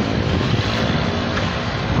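Steady low rumble of wind buffeting a handheld phone's microphone outdoors, loud and continuous.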